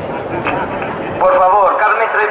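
Steady hubbub of an indoor sports hall, then, a little over a second in, a man starts speaking over the public-address system, louder than the background.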